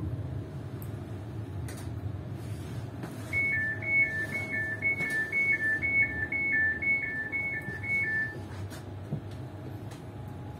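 Train door warning alarm: a high two-tone beep alternating between two pitches about twice a second, lasting about five seconds from roughly three seconds in. It sounds over the steady low hum of the stationary electric train.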